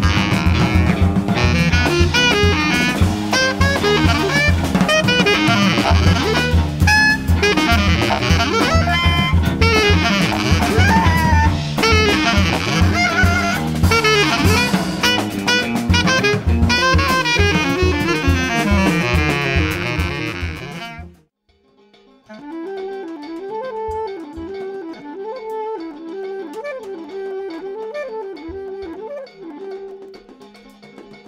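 A jazz trio of clarinet, guitar and drum kit plays loud, busy improvised music. About two-thirds of the way through it cuts off suddenly into a quieter, sparser passage with a held low tone and a wavering melody over occasional drum hits.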